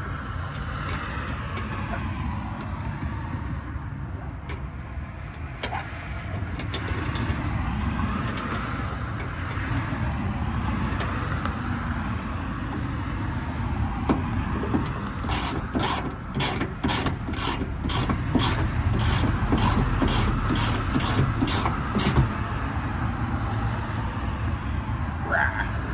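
Socket ratchet wrench clicking in a steady run of about two clicks a second, tightening the bolt of a hood strut's upper mount, starting a little past halfway through. Under it a steady rumble of road traffic.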